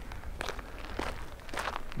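Footsteps on grass: a few soft steps about every half second.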